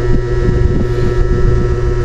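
A steady low rumble with a constant hum, and faint small ticks over it.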